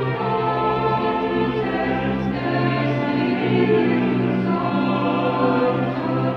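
Cathedral choir of boys' and men's voices singing with a string orchestra: sustained sacred choral music, the chords held and changing slowly.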